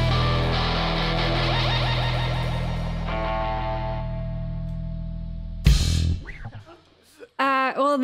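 Rock band of electric guitar, bass guitar and drums holding a slowly fading final chord. The distorted electric guitar rings over it. About three quarters of the way in, one loud closing hit from the whole band cuts the song off and it rings away. A voice starts just before the end.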